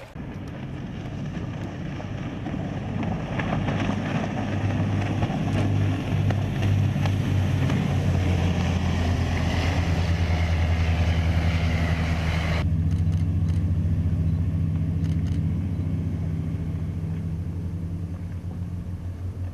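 Boat engine running steadily under way, with rushing water and wind noise that builds over the first few seconds. About two-thirds through, the rushing stops abruptly and the low engine hum goes on alone.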